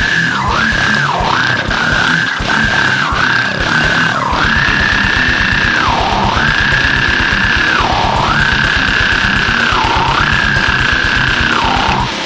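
Goregrind band recording: distorted, noisy metal with fast, dense drumming. A high held note repeatedly dips down in pitch and back up, quickly at first and then in longer swoops about every two seconds.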